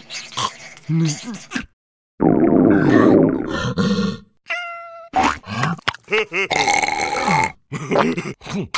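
Cartoon character voices making wordless grunts and exclamations, with a loud growl lasting about two seconds from about two seconds in and a short squeak just before the fifth second.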